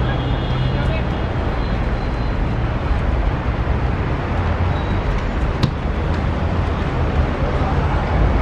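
Open-air ambience at a football pitch during play: a steady low rumble with faint distant voices, and a single sharp knock about five and a half seconds in.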